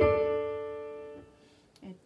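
A single chord played on an Electone electronic organ with a piano-like tone, struck once and dying away for about a second before it is released. A short spoken syllable comes near the end.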